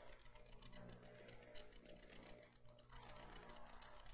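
Near silence: quiet room tone with a low, steady hum.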